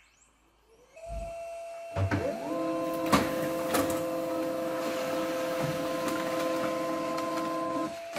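HP Laser MFP 137fnw laser printer starting up and printing a single page. A low thump about a second in, then a motor whine that rises to a steady pitch, with a couple of sharp clicks as the page feeds through.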